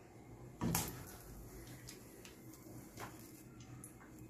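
Butter scraped from a small glass bowl with a silicone spatula into a nonstick wok of oil: one soft knock just under a second in, then a few faint clicks.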